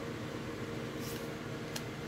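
Steady background hum of a small room, with the faint rustle of a trading card being slid off the front of a handheld stack about a second in and a small click shortly after.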